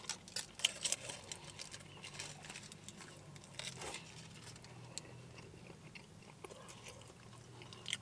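Close-up chewing and biting of a foil-wrapped beef burrito: a run of small wet clicks and crunches, busiest in the first couple of seconds, with another bite about four seconds in.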